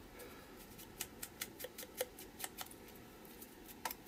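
Faint, irregular light clicks and taps of a foam ink blending tool dabbed and rubbed along the edges of a small scrap of paper, a dozen or so in a few seconds.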